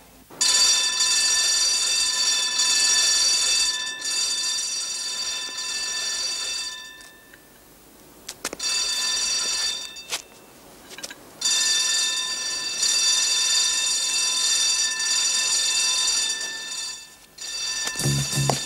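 Electric bell ringing loudly and continuously in long stretches. It breaks off twice for a second or two, with a couple of sharp clicks in the gaps.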